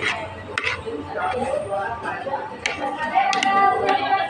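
Background talk of other people, with a few sharp clinks of a metal fork and spoon against a plate.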